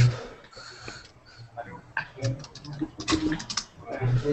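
Computer keyboard typing: a quick run of key clicks about three seconds in, with faint voices in the background.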